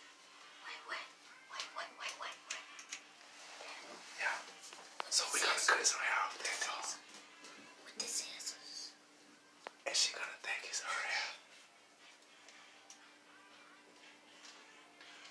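Hushed whispering voices in a small room, in several breathy bursts, the loudest a little past the middle.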